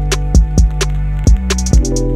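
Background music with a steady beat: a bass drum, short hi-hat ticks and held bass and chord tones.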